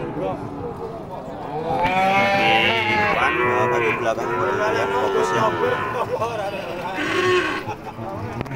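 Cattle mooing: two long moos run almost back to back from about two seconds in, their pitch bending up and down, and a short moo comes near the end.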